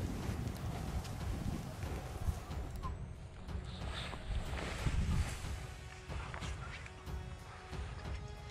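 Footsteps in rubber boots on ploughed soil, with wind rumbling on the microphone.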